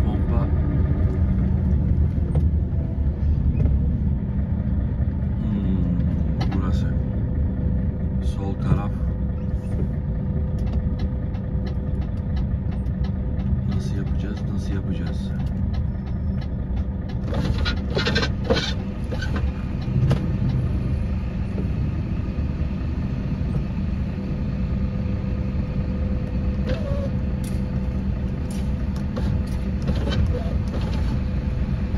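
Diesel engine of a Mercedes-Benz Actros concrete mixer truck, heard from inside the cab while driving through city streets: a steady low drone.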